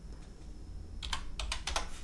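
Computer keyboard keystrokes: about half a dozen quick key clicks starting about a second in, as a new dimension value is typed in.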